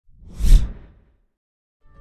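A whoosh sound effect that swells and fades over about half a second, peaking about half a second in. A second whoosh starts right at the end.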